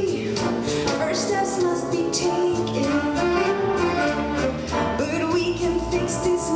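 Live big band music, horns and piano playing a slow ballad accompaniment with a woman singing over it.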